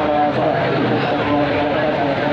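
A voice chanting in long, held notes that break and start again every half-second to second, over the steady noise of a large gathered crowd.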